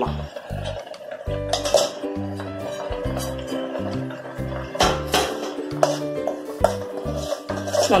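Background music with a steady bass line, over a steel spoon scraping and clinking against a metal kadai as spice powders are stirred into a thick masala paste, with a few sharp clinks about two seconds in, about five seconds in and near the end.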